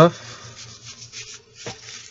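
Cardboard trading cards sliding and rubbing against one another as a stack is handled, a dry scraping with a sharp tick near the end.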